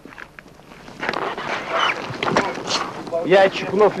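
Quiet, uneven outdoor noise with a few scattered knocks, then a soldier's voice begins reciting the Russian military oath aloud about three seconds in.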